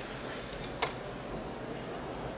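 Steady mess-hall background din with one sharp clink a little under a second in.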